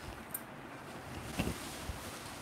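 Rustling of saree fabric as it is gathered and draped by hand, with a soft bump about one and a half seconds in.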